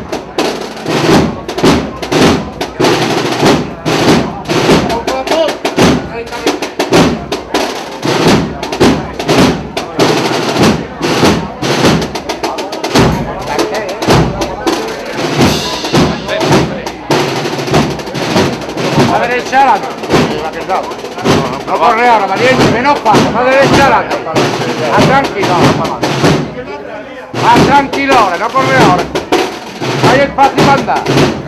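Procession band drums, snare and bass, beating a steady march, with voices in the crowd; a pitched, wavering melodic layer comes in during the second half.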